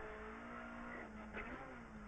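Opel Adam R2 rally car's four-cylinder engine running at a steady note, heard faintly inside the cabin.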